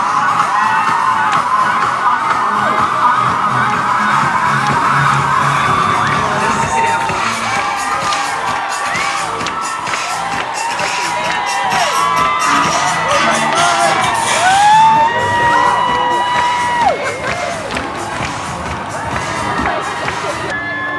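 A street crowd cheering and whooping over music, with one long held high call about fifteen seconds in.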